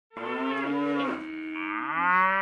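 Cow mooing sound effect: one long moo that wavers in pitch and rises near the end, starting just after a moment of silence.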